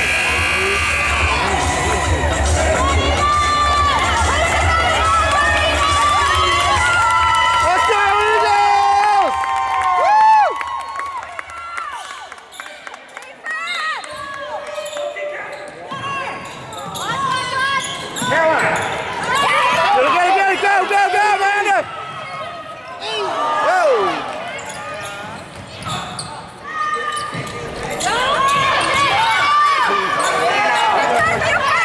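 Basketball being dribbled on a gym's hardwood floor during a game, with shouting voices from players and spectators echoing in the gym.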